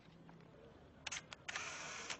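Camera shutter sound effect for the photo being taken: a couple of sharp clicks about a second in, then a half-second burst of winding noise like a film advance.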